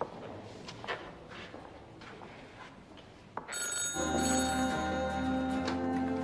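A telephone ringing, setting in loudly about three and a half seconds in after a quiet stretch with a few faint clicks.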